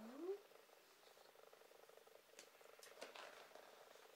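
Near silence over a faint steady hum, with a few soft scratches of a felt-tip marker on paper a little past halfway through.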